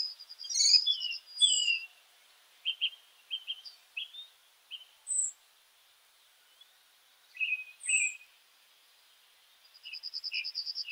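Birds chirping and calling: short high chirps and whistled notes with a fast trill in the first couple of seconds, then scattered calls with quiet gaps between them.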